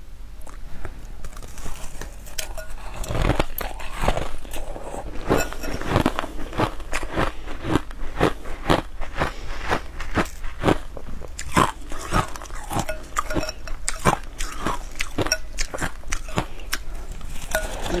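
Close-up crunching and chewing of a frost-covered block of frozen ice, bitten again and again in a steady run of crisp crunches, two or three a second.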